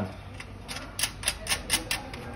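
A screw being fitted by hand through a sewing machine table's pedal support bracket: a quick, irregular run of about eight small clicks and taps, starting about a third of the way in.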